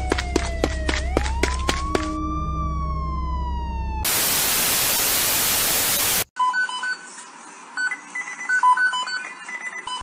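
Police siren sound effect wailing, falling in pitch then rising again, over a low hum and regular clicks. About four seconds in it cuts to a loud burst of static hiss lasting about two seconds, then quieter short electronic beeps at a few different pitches.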